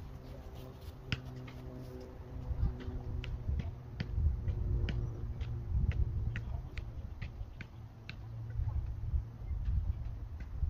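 Paintbrush dabbing on a stretched canvas: light, irregular taps, about two a second, over a low rumble.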